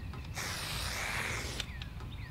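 Aerosol marking paint sprayed from an upside-down can on a marking wand, one hiss of about a second while a bed line is painted onto bare dirt.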